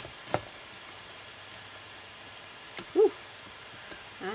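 A sharp tap about a third of a second in, then about three seconds in a short, high call that rises and falls in pitch, the loudest sound.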